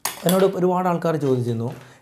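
A short, sharp metallic clink at the very start, then a man's voice for most of the rest.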